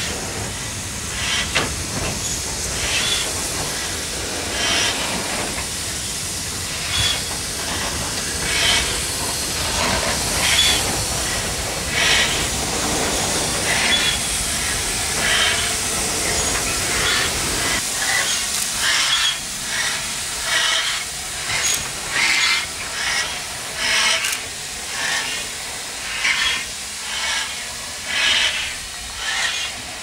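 Steam locomotive hissing steam, with regular puffs of exhaust: slow beats about every one and a half seconds, then faster ones about twice as often in the second half.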